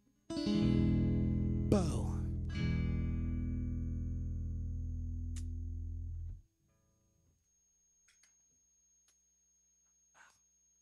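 Guitar chord struck and left to ring, with a quick falling slide and a second strum about two seconds in. The chord fades slowly and is cut off abruptly about six seconds in.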